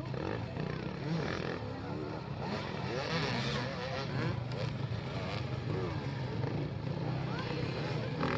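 Several enduro dirt-bike engines running as the bikes ride a rough course, with a voice talking faintly in the background.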